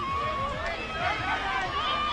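Distant voices calling out on a sports field, faint and drawn-out, over a low outdoor rumble.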